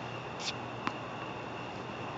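Outdoor tennis court ambience: a steady hiss with a faint high steady tone. A brief high scuff comes about half a second in, and a single sharp tap of a tennis ball on racket or hard court comes just under a second in.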